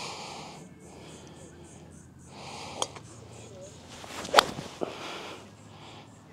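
A six iron striking a golf ball off grass turf: one sharp crack about four and a half seconds in, after a few seconds of soft breathy noise.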